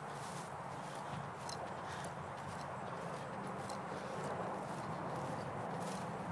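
Footsteps walking through pasture grass: a steady soft rustle with a few light ticks scattered through it.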